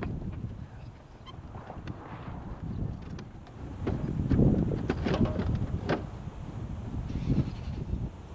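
Irregular clicks, knocks and rubbing of a motorcycle's plastic outer fairing being handled and fitted back onto a 2008 Harley-Davidson Road Glide, busiest in the second half, over wind rumbling on the microphone.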